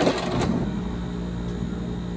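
Hard plastic cups clicking and clattering as one is pulled from a stack and handled, in the first half second, then a steady low machine hum.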